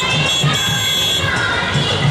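Music playing over the noise of a crowd, steady throughout.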